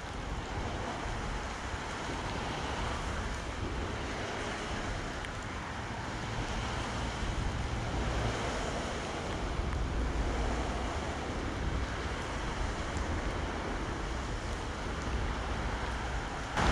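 Steady rushing noise of traffic on the road bridge overhead, blended with the creek running over its shallows; it swells a little about halfway through.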